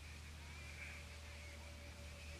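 Faint steady low hum and hiss of a taped recording, with no speech.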